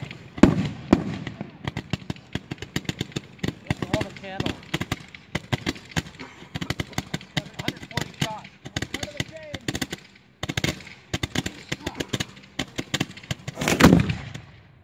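Firework finale cakes firing in rapid succession: a dense string of bangs and pops, several a second without a break, with louder booms about half a second in and just before the end.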